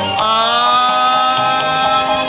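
Male crooner singing live into a microphone, holding one long steady note over a recorded backing track.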